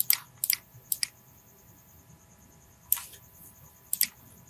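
Sharp clicks of a computer mouse and keyboard: a quick run of clicks in the first second, then a single click about three seconds in.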